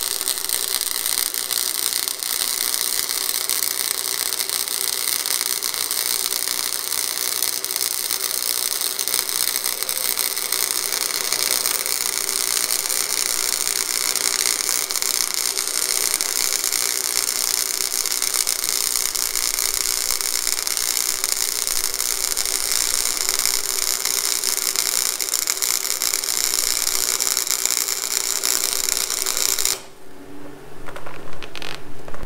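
A $99 Harbor Freight wire-feed welder turned up to its maximum setting, running one long continuous arc on 11-gauge steel stock: a steady, harsh crackle and hiss that cuts off sharply near the end. The bead it lays comes out awful, which the welder puts down either to something wrong with the machine or to his own technique.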